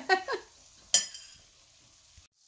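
A metal spoon clinks once against a ceramic plate about a second in, with a short bright ring, just after a brief burst of voice.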